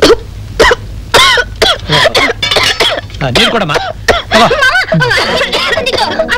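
A person coughing and clearing the throat in a few sharp bursts in the first second or so, followed by voices.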